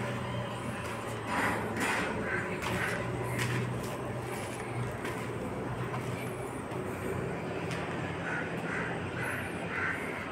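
Crows cawing in quick runs of harsh calls, about two a second, one run about a second in and another near the end, over a steady low hum.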